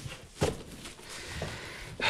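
Lid of a cardboard gift box being lifted off, with one light knock about half a second in.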